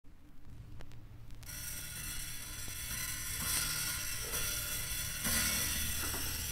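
Vinyl LP running in its lead-in groove before the music: a low hum with a few clicks, then steady surface hiss and crackle that come in suddenly about a second and a half in.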